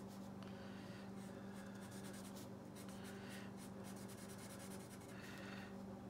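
Black Sharpie permanent marker scratching faintly across textured watercolor paper in short strokes as a small figure's legs are drawn and coloured in, over a steady low hum.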